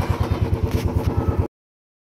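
An engine running with an even, low, rapid pulse, cut off abruptly about three quarters of the way through, leaving dead silence.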